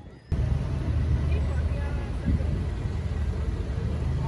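Busy city street sound: people talking among a crowd over a steady low traffic rumble, cutting in abruptly a moment in.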